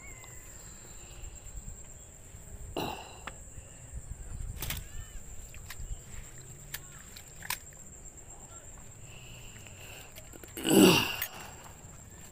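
Outdoor pond-bank ambience with a faint steady high-pitched whine, a few sharp clicks and knocks from a handheld phone and footsteps, and one short loud burst near the end.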